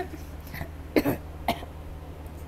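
A woman coughing twice in quick succession, short sharp coughs about half a second apart, after choking on her own saliva.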